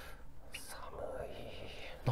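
Faint whispering close to the microphone, with a brief hiss about half a second in and no clear words.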